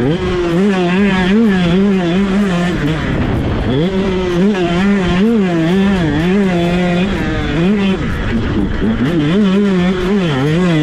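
KTM SX 125 single-cylinder two-stroke motocross engine revving hard under throttle, its pitch wavering rapidly up and down with the throttle. The revs fall away about three seconds in and climb sharply back, and dip again near eight seconds before rising once more.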